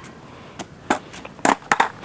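A hand-held camera being grabbed and handled: a handful of sharp clicks and knocks, most of them in the second half, the loudest about one and a half seconds in.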